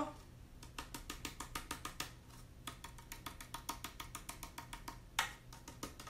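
Light, irregular tapping and clicking, several a second, from hands handling the chalkboard sign, with one louder knock about five seconds in.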